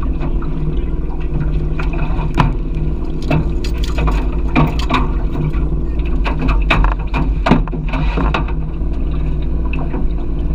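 Boat motor running steadily at low speed, overlaid by a string of knocks, bumps and splashes as a hooked fish is netted and hauled into an aluminium boat.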